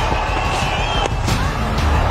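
Cricket ground crowd noise with a steady high tone through the first second. About a second in there is one sharp crack, the bat hitting the ball.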